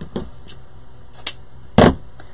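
A couple of light clicks, then a short, sharp knock near the end, the loudest sound: handling noise from craft materials being worked on.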